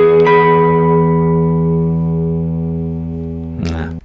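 Electric guitar (Telecaster) playing a widely spread open-voiced E major chord: low open E, G# on the 13th fret of the G string, and B on the 19th fret of the high E string, which enters just after the lower notes. The chord rings out, fading slowly, and is damped shortly before the end.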